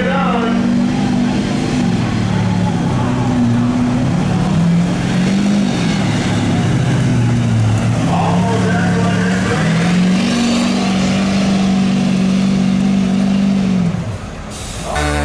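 Chevrolet Silverado heavy-duty pickup's diesel engine running hard under load as it drags a weight-transfer pulling sled along a dirt track. The engine note wavers, sags a little, then climbs again about ten seconds in and holds until it cuts off near the end.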